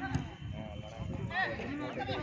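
Spectators' voices talking and calling out beside a football pitch, with one sharp knock just after the start.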